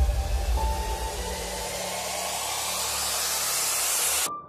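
A soundtrack noise riser: a hissing swell that builds steadily in loudness and brightness, with faint held tones beneath it, as the bass of the preceding music drops away.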